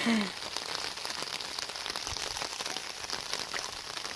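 Steady rain pattering: an even hiss made of many small drop ticks. A voice trails off at the very start.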